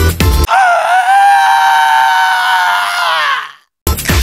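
Electronic dance music stops abruptly about half a second in, and one long, held scream takes its place. The scream lasts about three seconds and fades away. After a brief gap the music comes back in.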